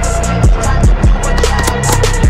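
Background music with a heavy beat: deep bass kicks that drop in pitch, over quick hi-hats and a steady bass line.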